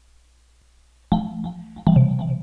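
Two synthesizer notes played live from a MIDI keyboard through FL Studio 9. The first starts sharply about a second in and the second strikes just before the end. They play back with little or no crackling at a 2048-sample ASIO buffer.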